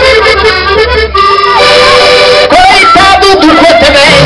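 Live band playing a lively traditional Portuguese folk tune led by a button accordion, with keyboard and drums behind it, loud. The low bass and drums drop out for about a second midway and then come back in.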